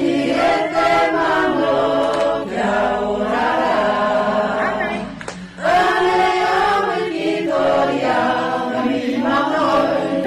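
A group of voices singing a song together in chorus, with a brief break about five seconds in before the singing picks up again.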